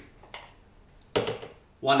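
A metal tablespoon tapping lightly against a tall jar as cacao powder is spooned in: a faint tick, then a brief sharper knock a little past a second in, followed by a spoken word.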